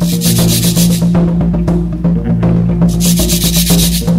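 Free-improvised jazz trio playing: a sustained low note under busy percussion, with two stretches of fast, even scraping, each about a second long, one near the start and one near the end.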